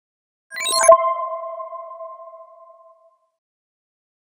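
Short electronic logo sting: a brief bright shimmer about half a second in, ending in a sharp hit, then a chime-like ping that rings and fades away over about two seconds.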